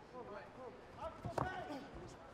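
Two quick thuds of a knee strike landing in a Muay Thai clinch, about a second and a quarter in, over faint voices.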